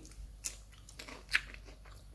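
Someone chewing a crisp raw leaf, with a few short, quiet crunches, the clearest about half a second and just over a second in.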